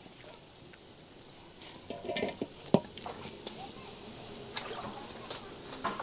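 Cooking pots and a woven lid being handled at a steamer of mèn mén (steamed ground maize): scattered light clinks and knocks, with one sharper knock a little before halfway.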